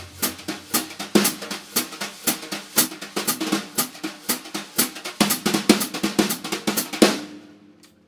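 Wire brushes playing a fast jazz swing pattern on a snare drum, a quick, even stream of strokes with a bass drum note ringing at the start. The playing stops about a second before the end.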